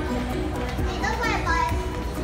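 Children's voices, with a high call about a second in, over background music of steady held notes and a low hum of a busy indoor space.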